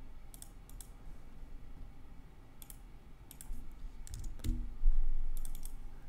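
Scattered clicks from a computer mouse and keyboard during desktop editing, coming in small clusters of two or three. A louder low thump comes about five seconds in.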